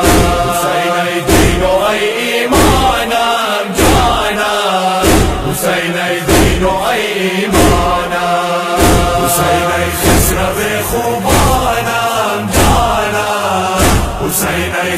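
A group of men chanting a Persian noha (Shia lament) in unison, with a heavy rhythmic thud of chest-beating (matam) about every 1.2 seconds.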